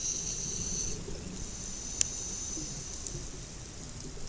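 Muffled underwater noise: a low rumble with a thin high hiss in the first second, and a single sharp click about halfway through.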